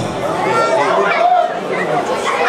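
Several people talking at once: overlapping chatter of voices, with no one voice standing out.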